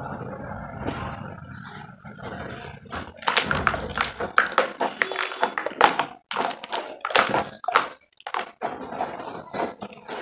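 Soft sand blocks crumbling and slumping into a tub of muddy water under pressing hands: a dense, low wet crumble at first, then a run of short wet squelches and splats as the mud is squeezed.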